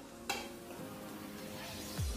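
A spoon scooping powder out of a plastic jar, with one sharp click of the spoon against the jar about a third of a second in, then soft scraping, over quiet background music.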